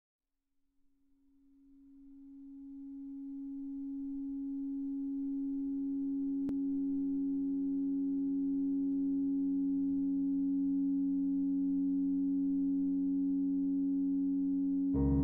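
EBow drone sustaining grand piano strings: one steady pure tone that swells in from silence over the first few seconds and then holds, with fainter tones above and below it. A faint click sounds about halfway through.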